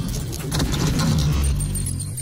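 Logo-intro sound effects: metallic clattering and jingling as the pieces come together, over a steady low rumble.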